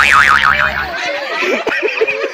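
Cartoon 'boing' sound effect added in editing: a tone that sweeps upward, then wobbles rapidly up and down in pitch for under a second before dying away.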